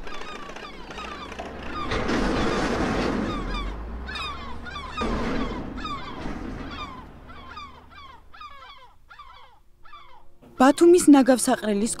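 A flock of gulls calling over and over, many short falling cries overlapping, over a low steady rumble. Two louder stretches of rushing noise come about two and five seconds in, and the calls thin out shortly before a man's voice starts near the end.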